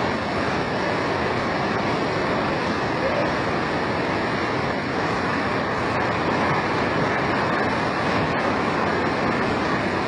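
Turbulent floodwater rushing in a torrent along and beneath a railway track: a steady, loud rush of water with no break.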